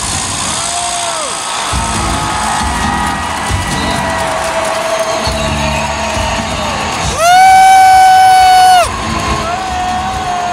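Arena crowd noise with loud music and a low beat, and wavering pitched calls. About seven seconds in, a very loud held horn sounds for about a second and a half, typical of the arena's game horn at a stoppage.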